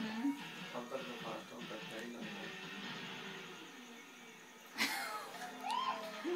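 Television programme audio heard from the room through the TV's speaker: background music with voices over it, and a short burst of noise about five seconds in.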